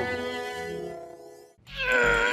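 Background music for a scene change. A held chord fades out over about a second and a half, then after a brief break a new comic music cue comes in loud, with a high held note and a beat underneath.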